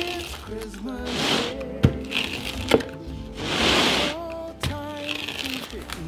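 Background music with a pizza cutter rolling through the baked crust on a wooden board: two spells of crunching, about a second in and near four seconds, and two sharp clicks between them.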